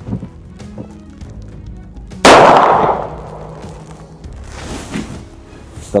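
A single shot from a short-barrelled revolver about two seconds in: one sharp, very loud report with a short tail dying away after it.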